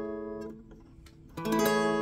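Acoustic guitar with a capo at the seventh fret strummed in the Dmaj9 shape, half-barred at the second fret. One strummed chord rings and fades out about half a second in. A second strum about 1.4 s in rings on.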